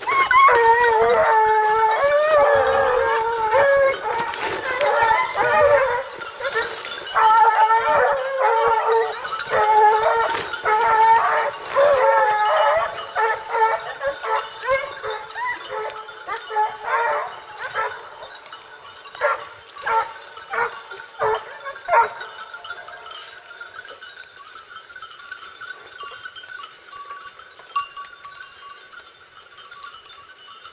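A pack of Porcelaine hounds baying in chorus as they trail a hare, many voices overlapping. The chorus thins to scattered single cries after about 13 seconds and dies away after about 22 seconds.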